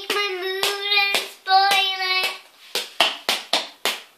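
A child singing the end of a silly song line while hands clap the beat about twice a second. The singing stops about two and a half seconds in, and a quicker run of about six claps follows.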